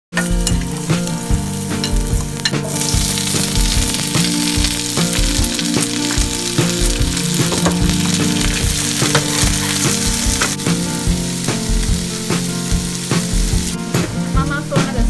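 Garlic, then sliced bell peppers and snow peas stir-frying in hot oil in a nonstick pan: a steady loud sizzle that grows much stronger a few seconds in. A metal spatula scrapes and taps the pan over and over as the food is tossed.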